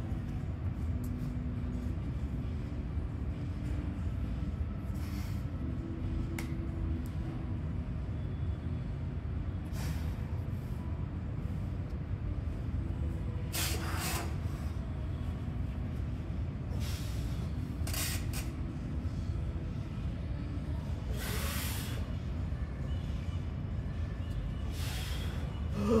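A weightlifter's short, hissing breaths every few seconds while bracing under a heavy barbell, over a steady low hum. Near the end comes a strained grunt.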